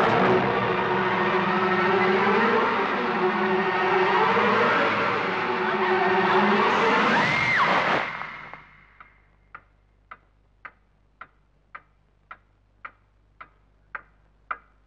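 Loud horror film score with dense, shifting tones and a high rising-then-falling note just before it cuts off suddenly about eight seconds in. Then a quiet room with a clock ticking, a little under two ticks a second.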